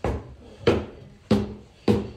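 Footsteps on wooden stairs and a hardwood floor: four heavy footfalls, evenly paced about two-thirds of a second apart, each a sharp knock with a short low ring from the wood.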